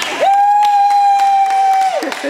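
A single loud horn tone held steady at one pitch for about a second and a half, with a brief rise at the start and a fall as it cuts off. It is the signal that ends the sparring bout.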